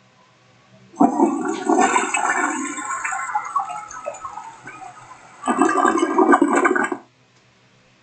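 A toilet flushing: a sudden rush of water about a second in that gradually fades, then a second loud surge of water near the end that cuts off abruptly.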